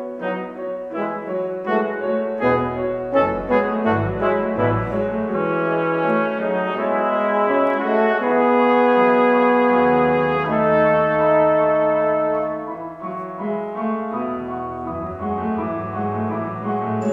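Instrumental opera music led by brass, with piano. It opens with short repeated chords, settles into long held chords from about six seconds in, and breaks into shorter notes again near the end.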